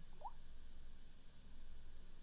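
Quiet room tone: a steady low hum, with one faint, short rising squeak about a quarter second in.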